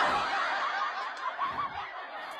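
A woman chuckling softly, fading away over the two seconds.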